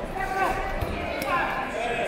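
Indistinct voices around a boxing ring, with a dull thud from the ring a little under a second in.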